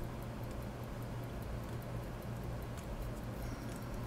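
Faint, scattered small metallic ticks of a screwdriver working at the ratchet wheel of a pocket-watch movement while trying to wind it, over a steady low hum. The mainspring is not taking the wind.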